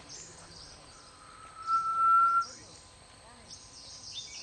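A bird's single long, steady whistled note lasting about a second and a half, growing louder before it stops abruptly. Behind it is a faint, patchy high-pitched chirring.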